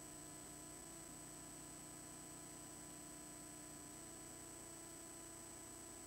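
Faint, steady electrical hum and hiss with a thin high whine: the noise of the audio line while the presenter's microphone is switched off.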